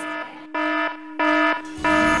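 Electronic alert buzzer: a steady tone with repeated beeps about two-thirds of a second apart, signalling an announcement on the house TV screen. Music comes in near the end.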